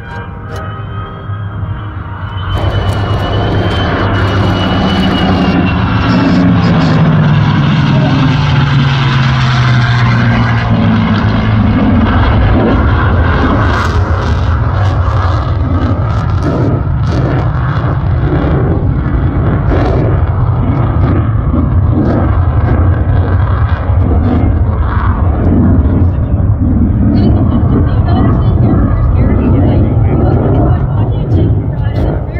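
Lockheed Martin F-35A Lightning II's jet engine, flying low in formation with propeller warbirds. The sound rises sharply about two and a half seconds in, and its low pitch falls steadily as the formation passes. The jet keeps running loud to the end.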